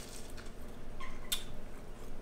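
A crisp baked puff pastry cracker being chewed with the mouth close by: soft crunching and crackling, with one sharper crunch just past the middle.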